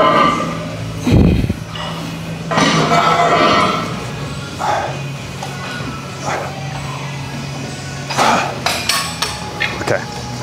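Gym background music with voices, and a dull low thump about a second in.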